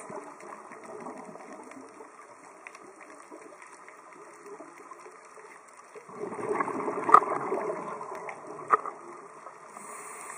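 Underwater scuba breathing: a low background hiss, then a louder rush of exhaled bubbles about six seconds in, with two sharp clicks during it.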